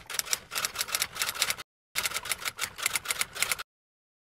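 Typewriter keystroke sound effect: two quick runs of sharp key clacks, about nine a second, split by a short gap of dead silence, typing out an on-screen title.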